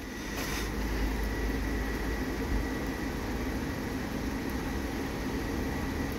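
Steady mechanical hum: a low rumble with a faint constant high-pitched whine, swelling slightly in the first second and then holding even.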